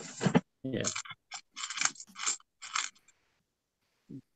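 Brief talk and a 'yeah' over a video-call line, with small plastic LEGO pieces being handled and clicked in the fingers.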